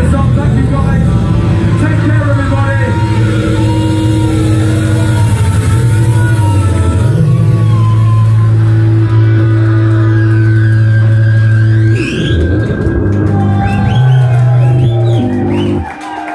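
Live rock band with electric guitar and bass playing long, loud held notes, with rising swooping effect sounds higher up in the second half. The music stops abruptly at the end.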